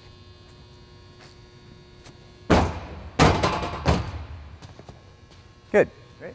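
Foot strikes of an athlete doing consecutive right-leg bounds: three heavy thuds about two-thirds of a second apart, starting about two and a half seconds in, each dying away quickly, over a steady low hum.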